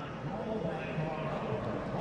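Faint, steady drone of NASCAR stock-car engines in the race broadcast's background sound.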